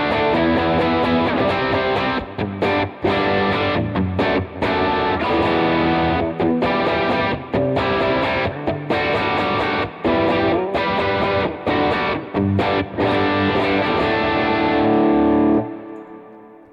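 Electric guitar playing distorted power chords through a Line 6 Helix preset's second drive. The chords are strummed in a rhythmic pattern with many brief stops, ending on a longer held chord that is cut off shortly before the end.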